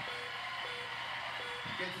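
Studio audience shouting and cheering while a game-show big wheel spins and its clicker ticks as the wheel slows, heard through a TV speaker.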